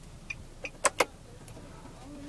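A few short plastic clicks from the car's dashboard switchgear being worked by hand, the two sharpest close together just under a second in.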